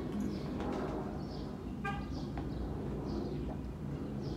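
Birds chirping now and then over a steady low background rumble, with one short pitched call about two seconds in.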